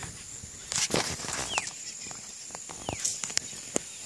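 Outdoor ambience: a steady high-pitched insect drone, two short falling bird chirps, and a few knocks and rustles from the phone being handled as it is moved.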